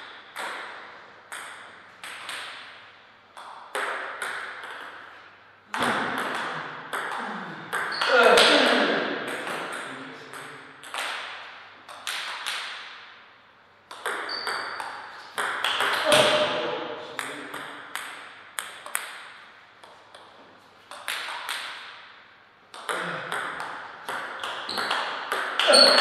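Table tennis ball clicking back and forth off the paddles and the table in several short rallies, with pauses between points. Short voices call out between points.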